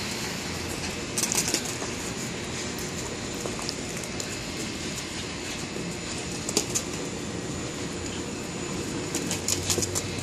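Footsteps crunching on a thin layer of fresh snow over ice, heard as a few short bursts of crackling, over a steady background hiss.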